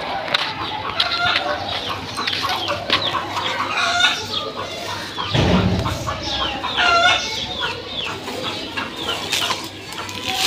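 Chickens clucking again and again in short calls, with a brief low rumble a little past halfway through.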